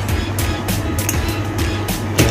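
Background music with a steady beat, about four beats a second.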